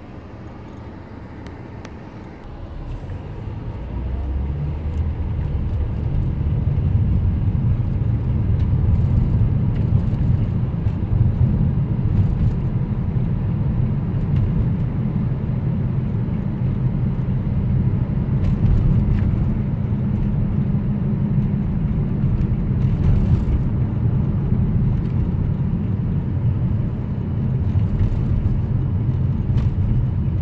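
Car noise heard from inside the cabin: a low rumble of engine and tyres that swells as the car gathers speed a few seconds in, then holds steady.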